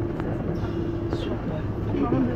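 AOMC electric train running slowly, heard from inside: a steady motor hum over rumble from the wheels on the track, with a brief high squeal about a second in.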